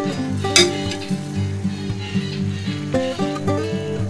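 Background music of plucked, guitar-like notes over the hiss of a pot of soup stock at a rolling boil, with a brief sharp crackle about half a second in.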